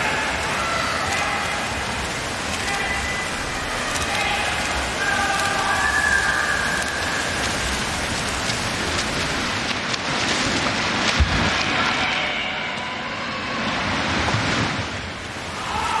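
Water splashing steadily from swimmers racing freestyle, with voices shouting over it, loudest a little before halfway.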